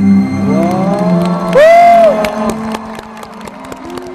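Arena crowd cheering and clapping as the skater's program music dies away, with a long rising-and-falling exclamation about halfway through.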